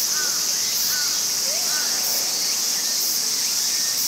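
Steady high-pitched chorus of insects, with a short chirping call repeating about once a second over it.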